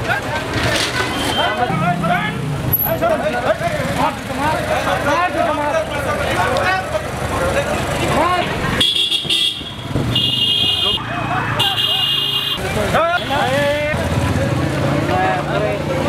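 Voices calling out over street noise, broken by three vehicle-horn blasts of about a second each, roughly nine, ten and a half, and twelve seconds in.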